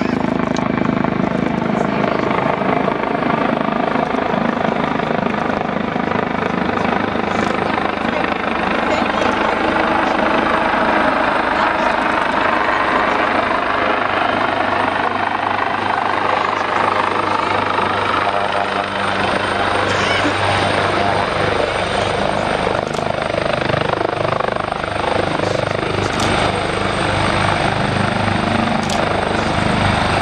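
Jet engines of a Boeing VC-25A (Air Force One, a four-engine 747) running at taxi power as it rolls past: a steady, loud whine and rumble with tones that slowly shift in pitch.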